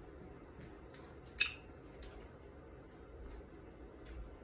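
A single sharp metallic click about one and a half seconds in, from a Zippo lighter fitted with a butane torch insert snapping shut. It stands over faint room tone.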